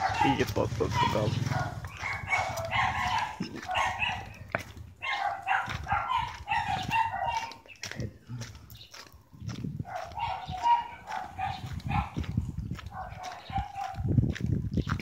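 Voices and animal calls in repeated short runs, with brief quieter gaps in the middle.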